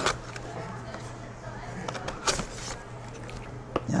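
Scissors cutting into product packaging: a few sharp snips and some handling noise, the clearest at the start and about two seconds in, over a steady low room hum.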